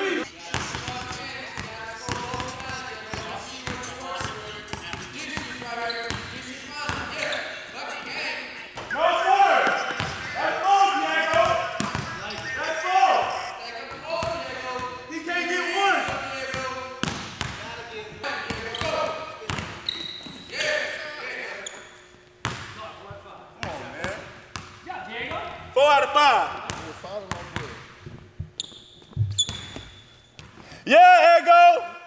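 Basketballs dribbled on a hardwood gym floor, many sharp bounces echoing in a large hall, with indistinct voices throughout.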